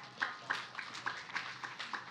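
Scattered audience clapping: a few irregular claps each second from several pairs of hands, in reaction to a quip.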